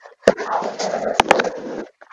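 Replayed stretch of a podcast headset-microphone track: a muffled, noisy rush lasting under two seconds, broken by a few sharp clicks, which some listeners hear as a voice saying "how dare you" and others only as feedback.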